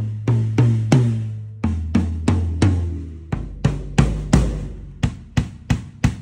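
Acoustic drum kit with Evans heads struck one drum at a time to show off its tuning. Each drum gets about four hits that ring with a clear pitch, and the pitch steps down from a higher tom to a lower tom to the deepest drum, with a few sharper hits near the end.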